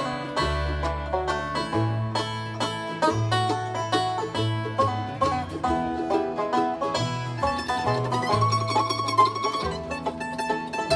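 Live bluegrass band playing an instrumental break, the five-string banjo picking the lead over acoustic guitar and upright bass. A held, wavering high note joins about eight seconds in.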